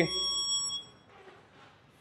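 A high electronic tone with several steady pitches rings out and fades within about the first half second, followed by near silence.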